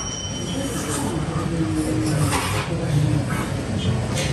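Steady dining-room noise from people eating at a table: indistinct voices with scattered short clinks and rustles over a low rumble.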